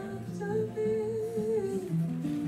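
A man hums a long, slightly wavering note between sung lines, over an acoustic guitar played below it.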